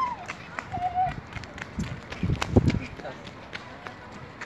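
Footsteps and knocks from a hand-held phone while walking, with a cluster of louder low thumps about two and a half seconds in and a brief thin tone about a second in.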